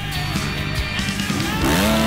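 Rock music track with a motocross bike's engine revving up over it, rising in pitch near the end.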